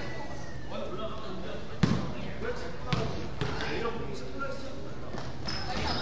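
Basketball bounced on a wooden gym floor before a free throw: two sharp bounces about a second apart, the first louder, ringing in a large hall over a murmur of voices.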